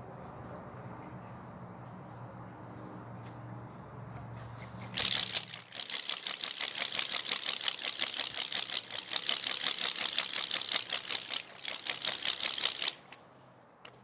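Homemade bee buzzer (a rubber band stretched over a popsicle stick and cap erasers, with an index card, whirled round on a string) buzzing as it spins: the vibrating rubber band gives a rapid, pulsing, bee-like buzz. It starts about five seconds in, falters for a moment, runs on, and stops about a second before the end. A faint low hum is heard before it.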